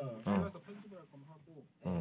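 A man's voice, quiet and indistinct: two short low vocal sounds, one just after the start and one near the end, with faint murmuring between.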